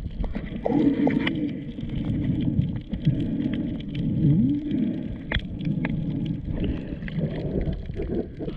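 Muffled underwater sound picked up by a submerged camera: water moving and gurgling around it as the swimmer moves, with low wavering tones that bend up and down and a few sharp clicks about five and a half seconds in.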